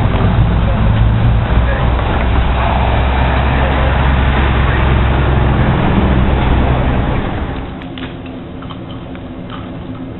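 Street traffic noise: a steady low rumble of passing cars and their tyres on the road. About three quarters of the way through it drops away to a much quieter background with a few light ticks.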